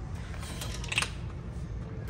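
A few light plastic clicks and knocks, the loudest about a second in, as plastic body wash bottles are handled on a store shelf, over a low steady hum.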